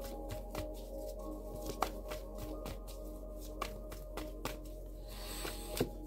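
A deck of tarot cards being shuffled by hand, a run of quick, irregular light clicks and flicks of card against card. Soft ambient background music with long held tones plays underneath.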